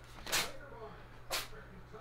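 Two short papery rustles about a second apart as a kraft-paper envelope and greeting cards are handled.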